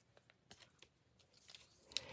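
Near silence with a few faint, short ticks: scissors and a vellum paper piece being handled on a craft mat.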